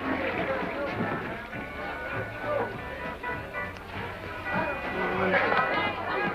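Music playing with indistinct voices talking over it.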